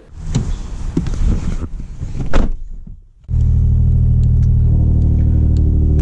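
Nissan Z sports car's V6 engine cutting in abruptly about halfway through and then running at a steady, loud cold idle, just after starting. Before it, an irregular, rougher noise fills the first half.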